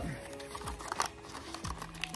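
A small paperboard box being opened by hand: a few light clicks and scuffs as the flap is pulled open and the insert slides out, over faint background music.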